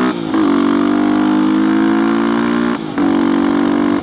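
Yamaha WR250X's 250 cc single-cylinder four-stroke engine through a full FMF exhaust, accelerating hard under the rider: the revs climb, drop at a gear change just after the start, climb again and drop at a second shift near the end.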